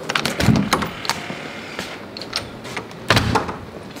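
A door being unlocked and opened by its knob and deadbolt: a run of metal clicks and rattles, with two heavier thumps about half a second in and just after three seconds.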